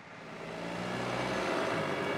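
Road traffic: a motor vehicle going by, its engine and tyre noise swelling over about a second and then holding steady.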